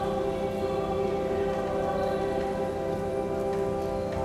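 Church music during Mass: long, steady held chords with no spoken words, shifting to a new chord near the end, over a faint rustling haze.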